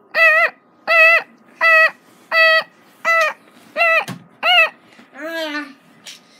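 Alarm tone beeping over and over, the same rising-and-falling beep about one and a half times a second. Near the end the beeping stops and a drawn-out groan falls in pitch.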